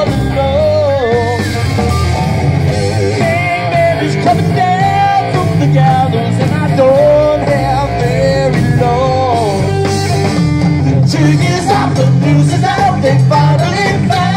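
Live rock band playing: drums, bass guitar and keyboard under a lead melody that bends in pitch, loud and steady.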